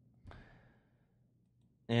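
A short, soft breath, like a sigh, from the male narrator at the microphone, about a quarter second in and fading within half a second. His speech begins right at the end.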